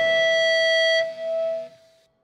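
Electric guitar feedback left ringing as a hardcore song ends: one steady high note held alone after the band stops. It breaks off about a second in, swells once more briefly, then dies away.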